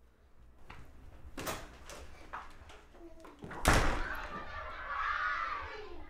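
A door slamming shut about three and a half seconds in, after a few lighter knocks, followed by muffled voices.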